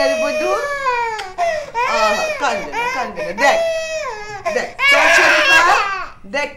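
A baby crying in wails, with adult voices over it; the crying grows louder and harsher near the end.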